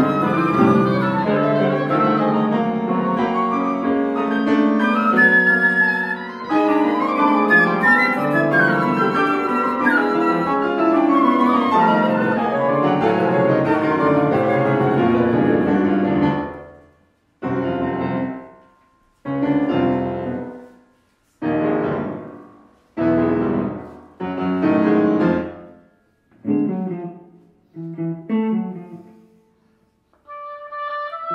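Contemporary classical chamber music for flute, oboe, electric guitar and piano: dense, overlapping instrumental lines for about the first sixteen seconds, then a slow series of separate chords, each struck and left to die away, about one every second and a half.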